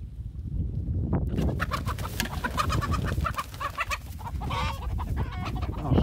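Chickens clucking and squawking in a rapid, agitated run of short calls that breaks out about a second in, with one longer, louder squawk later on: the alarm of a hen that has just been shocked by the electrified poultry net.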